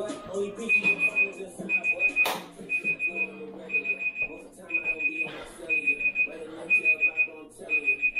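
Digital timer alarm beeping in bursts of four or five quick high beeps, about one burst a second, starting just under a second in, marking the end of a timed exercise set. A sharp knock about two seconds in.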